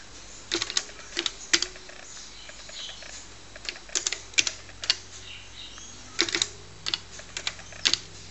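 TRS-80 Color Computer keyboard being typed on: single keystrokes clicking in small irregular clusters with pauses between them, as a command is typed out slowly.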